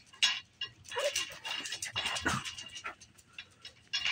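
A dog whining in a thin, steady high tone for about a second and a half, starting about a second in. Under it, light clacking of wooden beads and pieces on a bead-maze activity cube that a baby is playing with.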